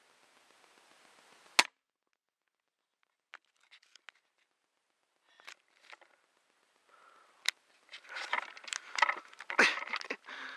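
Pistol crossbow firing once: a single sharp snap of the string about a second and a half in. After a gap come rustling steps through dry leaves and brush, with a few sharp clicks, growing busier near the end.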